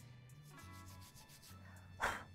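Faint, quick scrubbing strokes of a brass wire brush on copper wire, polishing the blackened wire back to a shiny finish, over quiet background music.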